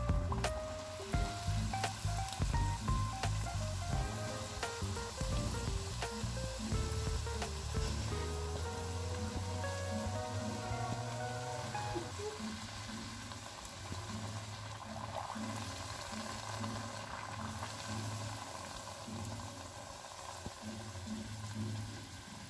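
Hot oil sizzling steadily as an aloo-methi kachori deep-fries in a kadhai. Background music plays over it: a melody that stops about halfway through, then a low repeating beat.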